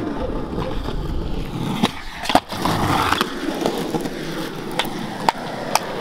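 Skateboard wheels rolling on concrete, with sharp clacks of the board striking the surface: the loudest about two and a half seconds in, and two more near the end. The rolling rumble drops away after about three seconds.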